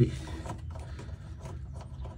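Faint handling noise of a hand tightening the wing knob on a tonneau cover's rail clamp: light rubbing with a few small clicks over a low steady hum.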